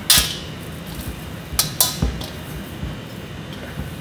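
Risen bread dough being punched down and handled in a stainless steel mixing bowl: a brief rustle at the start, then a few dull knocks and two sharp clicks against the bowl about a second and a half in.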